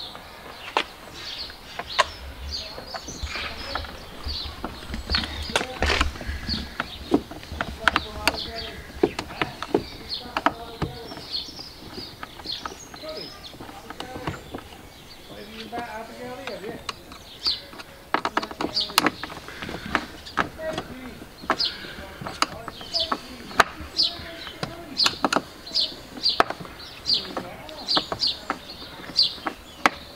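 Small clicks and taps of a hand screwdriver and fingers working the screws and plastic of a door-mirror guard, with birds chirping in the background.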